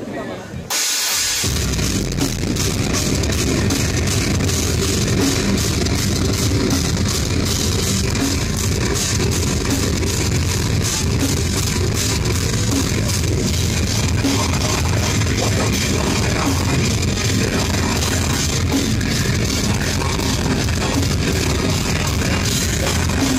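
Live rock band playing loud and heavy, with drum kit, guitars and bass. The full band kicks in suddenly about a second in, after a quieter intro.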